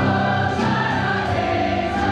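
Choir singing held chords over band accompaniment with a steady beat.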